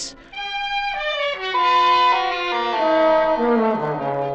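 Brass-led orchestral music bridge: a run of held chords stepping downward in pitch that settles on a low sustained chord near the end. It marks a scene change in the radio play.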